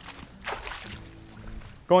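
A short splash of shallow river water about half a second in, followed by faint background music.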